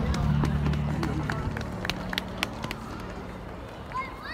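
Footsteps on pavement with sharp, irregular clicks, over the murmur of an outdoor crowd. Low sustained music fades away over the first three seconds.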